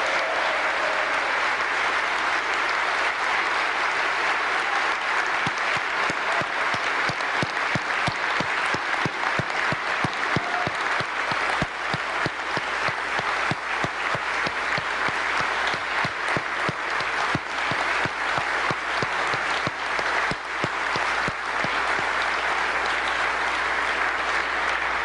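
A large audience giving a sustained standing ovation: steady, dense applause of many hands clapping in a large, echoing chamber, dying away near the end.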